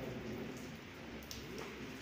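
Hands crumbling and mixing a moist, crumbly gulab jamun dough in a large steel tray: a soft, irregular crackle and patter with a few faint clicks.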